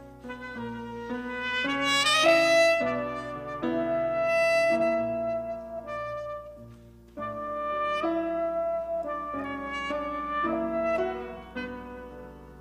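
Saxophone playing a melodic jazz line over piano accompaniment. It holds a long high note a couple of seconds in and breaks off briefly about seven seconds in before the phrase resumes.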